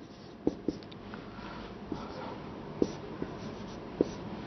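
Marker writing on a whiteboard: a few short, sharp taps of the tip against the board between soft strokes, fairly quiet.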